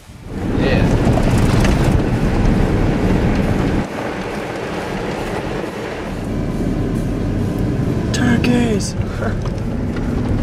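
Loud, steady engine and road rumble inside a pickup truck's cab while driving on a dirt road, easing slightly about four seconds in.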